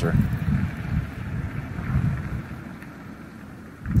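Wind buffeting the phone's microphone: irregular low rumbling gusts that ease off about three quarters of the way through.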